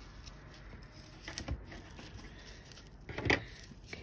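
Soft rustling and handling of ribbon and jute twine as the twine is tied around a ribbon bow, with faint scattered ticks. A sharper click a little after three seconds in, as a plastic clip is taken off and set down on the table.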